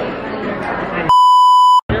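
Restaurant chatter for about a second, then a loud, steady electronic bleep tone edited into the soundtrack. It blanks out all other sound for under a second and stops abruptly.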